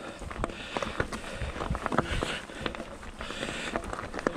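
Mountain bike tyres rolling over a loose gravel and stone track, with many irregular clicks and knocks from stones and the rattling bike.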